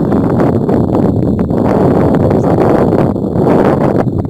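Wind buffeting the microphone: a loud, steady rush of low noise with no other sound standing out.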